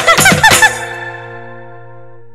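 Telangana Bonalu devotional folk song reaching its end: a last sung phrase in the first second, then a held final chord of steady sustained tones that slowly fades out.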